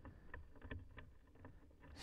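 Near silence: a low steady hum with a handful of faint, short clicks.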